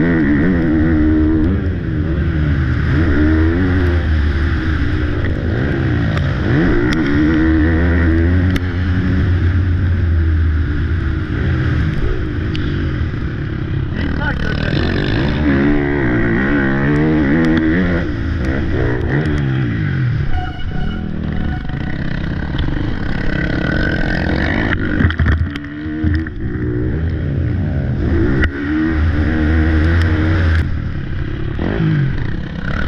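Motocross bike engine heard from the rider's helmet camera, its pitch climbing and falling again and again as the throttle is worked through gears and corners, with brief throttle-offs about twenty and twenty-five seconds in.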